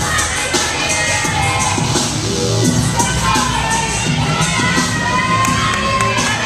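Spectators cheering and shouting, many high voices at once, with clapping.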